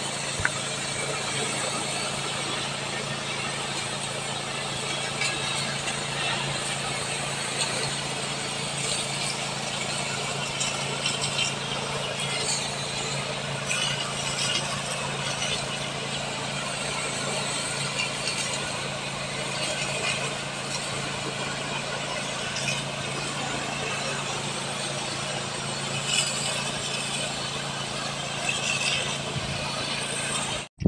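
Small engine-driven power sprayer running steadily, with the hiss of a high-pressure jet from a long spray lance being directed over a durian tree.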